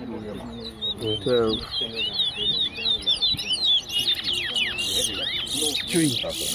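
Caged towa-towa seed finches singing: fast, repeated whistled phrases of sweeping notes that start about a second in and grow denser and louder toward the end.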